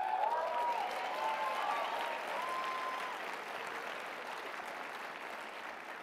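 A large audience applauding, starting at once and slowly dying away, with a few voices calling out over it in the first three seconds.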